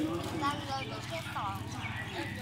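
A young child's voice: short high-pitched vocal sounds, including one quick falling squeal about a second and a half in.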